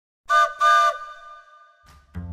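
A railroad whistle sounds two loud blasts, a short one and then a longer one. Each blast is a chord of several steady tones, and the sound echoes away over about a second afterwards.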